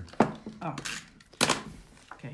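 Two sharp knocks about a second apart as a clear acrylic stamp block and card are handled and set down on a wooden tabletop.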